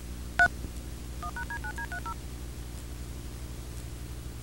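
Touch-tone (DTMF) signalling tones recorded on the VHS tape's soundtrack: one short loud two-tone beep, then a rapid run of about eight quieter dual-tone beeps. Underneath runs a steady mains hum with tape hiss.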